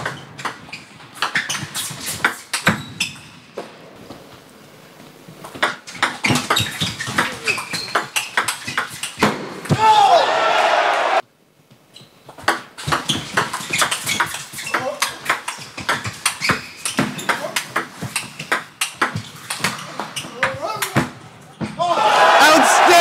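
Table tennis ball clicking off bats and table in fast doubles rallies, two spells of quick irregular hits. Near the middle a burst of crowd shouting and cheering cuts off suddenly.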